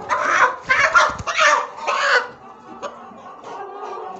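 A young Mwendokasi rooster squawking loudly while held by the body, with its wings flapping. About four harsh calls come in quick succession in the first two seconds, then it quietens.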